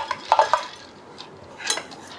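Washed red lentils tipped from a bowl into a steel pressure cooker onto sliced potato, with a few short knocks and clinks against the cooker.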